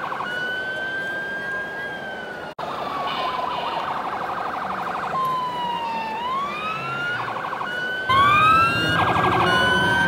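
Electronic siren of model fire trucks: a slow rising and falling wail broken by short bursts of a fast warble, with a brief break about two and a half seconds in. Near the end a second siren joins and it gets louder.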